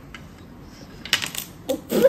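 Small plastic toy swords from a Barrel Pirate game clicking and clattering together as a child picks through the pile. It is a handful of light, sharp clicks in the second half.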